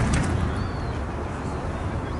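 Outdoor dockside ambience: a steady low rumble, like wind on the microphone, with a faint thin high bird call about half a second in and another near the end.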